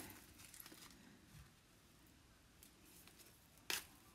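Faint rustling of artificial flower stems and fabric leaves being worked apart by hand, pieces peeled off a floral pick, with one sharp click near the end.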